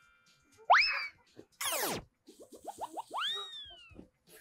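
Cartoon-style comedy sound effects: a springy boing about a second in, a quick downward-sliding swoop, then a run of short rising blips and a last tone that rises and slowly falls away.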